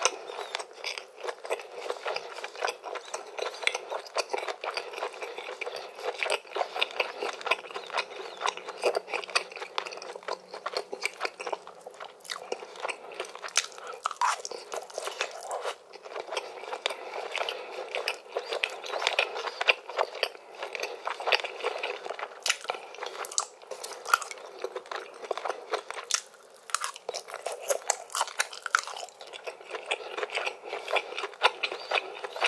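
Close-up chewing of cheesy grilled chicken: wet mouth smacks and crunching bites in a rapid, continuous stream of clicks, very close to the microphone.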